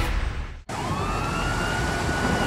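Police siren wail rising in pitch and then holding, over the rumble of vehicle engines. It comes in right after the sound drops out briefly a little over half a second in.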